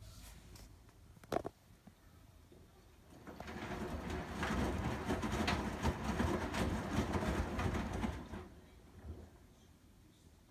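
Front-loading washing machine on a delicates cycle: a click about a second and a half in, then the drum turns for about five seconds, tumbling and sloshing wet clothes in soapy water, before it settles again.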